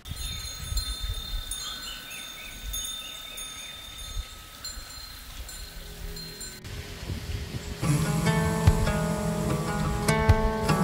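Sustained, chime-like high ringing tones over a low rumble. After a cut, acoustic guitar music starts about eight seconds in and is the loudest part.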